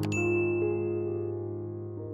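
A click followed by a bright bell ding that rings out for just over a second: the sound effect of a subscribe-button and notification-bell animation, heard over soft background music.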